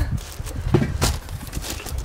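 Packaged food and cardboard boxes being handled: a few short knocks and rustles over a low rumble.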